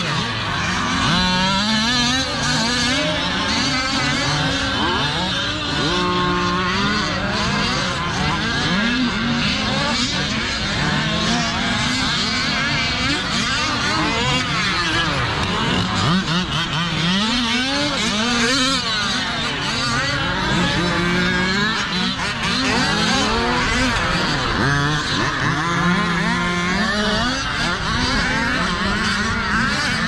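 Several large-scale RC cars' small two-stroke engines racing together, each revving up and falling off repeatedly so the pitches keep rising and falling over one another.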